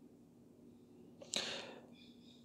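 A quick, sharp intake of breath about a second and a half in, fading over half a second, over faint room tone.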